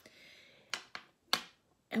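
A soft breath, then brief sharp clicks about three quarters of a second in and again about half a second later.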